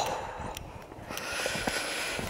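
Quiet footsteps on a dry dirt footpath, a few faint soft clicks over low outdoor background noise.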